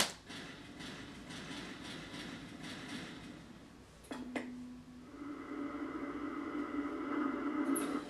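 A sharp click, then the opening of a trailer soundtrack: a quick downward sweep about four seconds in settles into a low, steady drone that swells over the last few seconds.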